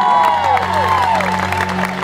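Concert audience cheering and applauding, with high whoops that fade after about a second. About half a second in, a low held note from the band starts under the clapping.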